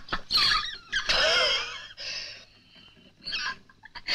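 A woman laughing in high-pitched bursts, the longest running for about a second starting about a second in, with a shorter burst near the end.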